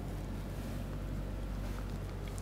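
Steady low hum with faint background hiss: room tone between spoken phrases.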